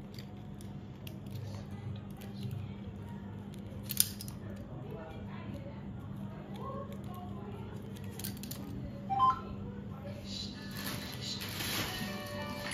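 Bangles clicking against each other as they are worked onto a wrist: a sharp clink about four seconds in, another a little after eight seconds, and a brief ringing clink just after nine seconds. Music comes in near the end.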